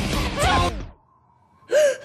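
The title-card music and sound effects cut off about a second in. After a short pause, a person gives a loud, sudden gasp near the end.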